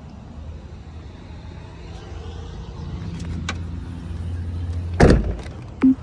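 Ford Bronco's rear swing gate slammed shut: a single loud thud about five seconds in, with a short knock just before the end. Beneath it is a steady low hum that grows louder before the slam.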